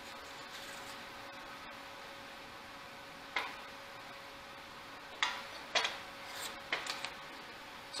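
A few short, sharp metallic clinks as a steel card scraper is handled at a bench vise and laid on the wooden bench top: one about three seconds in, then four more in quick succession near the end. A faint steady hum runs underneath.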